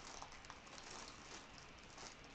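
Faint rustling and a few light clicks of a package being handled and unpacked; otherwise near silence.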